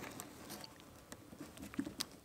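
Faint, scattered small clicks and taps from a GoPro extension pole being handled and seated in its holder on the bike.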